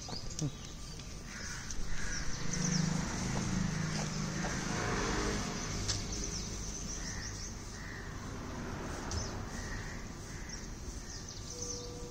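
Birds chirping and calling in outdoor background ambience: many short high chirps throughout, with several lower calls in the second half. A faint low rumble sits under it a couple of seconds in.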